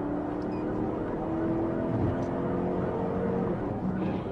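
Car engine accelerating, its pitch rising steadily for about three and a half seconds and falling back near the end.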